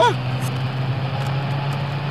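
Car running with a steady low hum, heard from inside the cabin.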